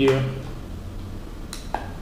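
Codegen Falcon XMan HD20 action camera being fitted into its clear plastic waterproof housing: quiet handling, then two short plastic clicks about a second and a half in.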